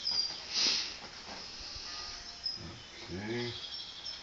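Chalk scraping across paper in strokes, the loudest a scratchy stroke about half a second in, over faint thin high chirping. A man's voice gives a short murmur about three seconds in.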